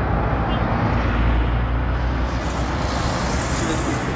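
Steady road traffic noise: cars running past with a continuous low rumble of engines and tyres.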